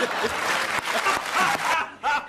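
Studio audience applauding, dying away shortly before the end.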